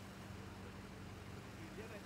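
Steady low hum of the parked Astrovan's engine idling, with faint voices in the distance near the end.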